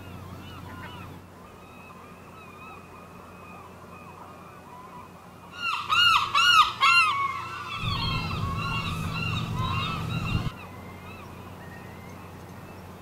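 Gulls calling: repeated rising-and-falling cries, loudest and quickest about six seconds in. A low rumble joins for a few seconds near the end.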